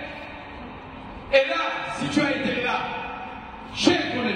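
A man preaching through a handheld microphone, with two sharp loud bursts, about a second in and near the end.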